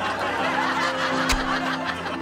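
A group laughing over light music with a few held notes, and a single sharp click just past the middle.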